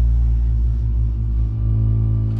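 Live electronic music from a keyboard synthesizer: a loud, steady low bass drone with several sustained organ-like tones held above it.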